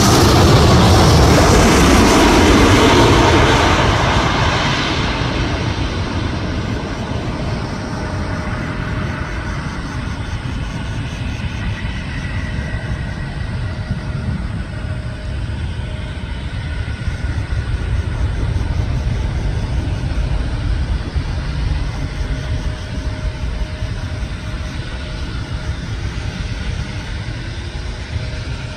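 Japan Airlines Boeing 787-8 landing. A loud jet roar with a falling engine whine as it passes close by fades over the first few seconds. It becomes a steady rumble as the airliner rolls out along the wet runway, and the rumble swells a little in the middle.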